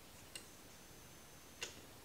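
Two faint, sharp clicks about a second and a quarter apart, from an insulation tester's controls and banana-plug test leads being handled, with a faint high steady tone between them.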